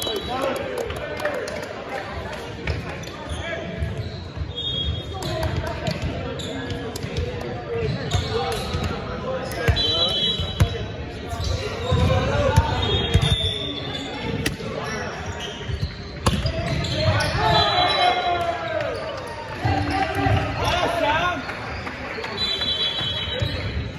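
Volleyball play in a large gymnasium: players' voices and calls echoing in the hall, sneakers squeaking on the hardwood court several times, and the sharp thuds of the ball being struck and hitting the floor.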